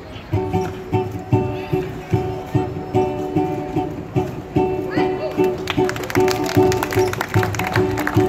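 A small live street band, trombone and banjo, playing a bouncy tune with a steady beat of about two pulses a second; the strumming gets busier and brighter in the second half.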